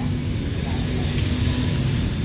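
Steady low rumble of motor traffic with a faint engine drone.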